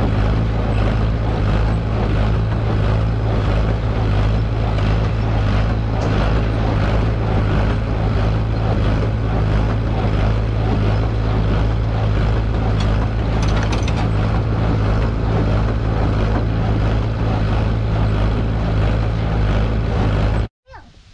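A John Deere 820 tractor running steadily under load while a New Idea 551 small square baler works behind it, its mechanism clattering as bales are pushed up the bale chute onto the wagon. The tractor engine's low hum holds an even pitch throughout.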